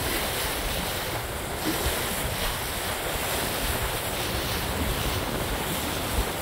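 Steady wind rumbling on the microphone over the wash of water along the hull of a sailboat moving under sail through choppy water.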